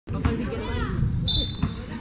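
A basketball bouncing on a paved outdoor court, two thumps, over the chatter of a crowd of kids. A high, steady tone starts about a second in and holds to the end.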